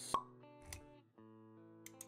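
Intro jingle for an animated title: a sharp pop sound effect right at the start, a softer hit about three quarters of a second in, then quiet held musical notes.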